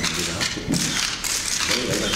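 Rapid, irregular clicking of press camera shutters, densest in the middle, over a man speaking haltingly with pauses.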